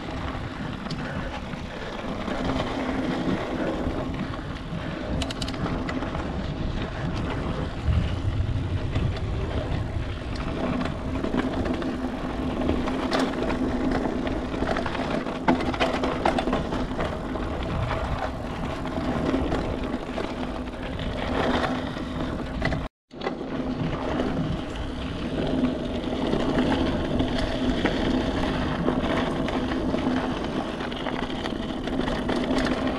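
Mountain bike ridden fast on a dirt singletrack: knobby tyres rolling over the trail with a steady hum, the bike rattling and knocking over bumps, and wind buffeting the microphone. About two-thirds of the way through, the sound cuts out completely for a moment.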